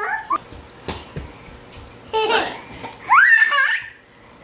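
A young child's giggles and high-pitched vocal sounds, ending in a longer squeal that rises and holds near the end, with a couple of light taps in between.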